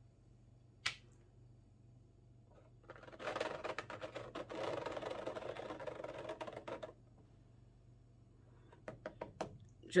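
A plastic scraper dragged through wet acrylic paint on a canvas, a scrape of about four seconds starting about three seconds in. A single light tap comes about a second in and a few small clicks near the end.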